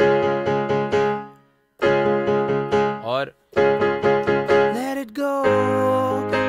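Digital piano: a chord struck several times in quick succession, dying away before two seconds in, then more chords in groups of quick repeated hits, and a held chord with a low bass near the end. A voice briefly sings along twice.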